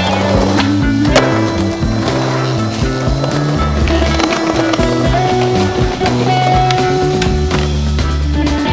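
Music over the sounds of a skateboard: urethane wheels rolling on concrete and the wooden board clacking, with the sharpest clack about a second in.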